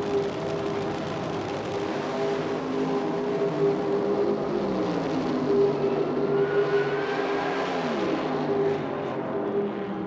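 Nitro Funny Car engines running down a drag strip on an old race broadcast. About eight seconds in, the engine note drops in pitch.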